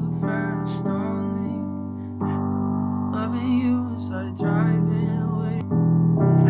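Sustained chords from a software instrument played on a MIDI keyboard. Each chord is held for one to two seconds before the next one, with changes about a second in, at about two seconds, after four seconds and near the end.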